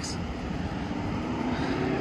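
A steady engine drone whose pitch rises slowly, over a low rumble.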